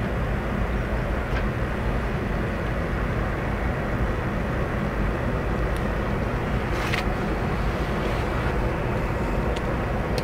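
Steady low rumble of ship and tugboat engines, with a short faint tick about seven seconds in.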